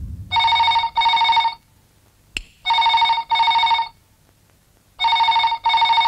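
Landline telephone ringing in double rings: three ring-ring pairs about two seconds apart, each an even electronic trill.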